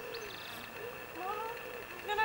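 Indistinct distant voices, many short rising and falling calls overlapping, under a steady faint high-pitched tone.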